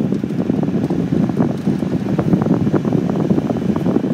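Volvo climate-control blower fan running near its top speed, a loud steady rush of air from the dashboard vents that buffets the microphone. It starts to die away right at the end as the fan is turned down.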